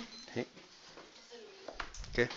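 Close-up handling noise from the recording camera: two short sharp knocks about a second and a half apart, with a faint brief voice sound between them.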